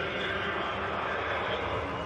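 Steady rushing background noise, with faint voices in it.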